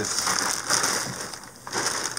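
Clear plastic bag rustling and crinkling as it is handled and pulled open.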